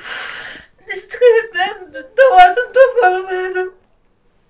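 A person crying aloud: a loud noisy breath at the start, then sobbing in a high, wavering, broken voice for nearly three seconds.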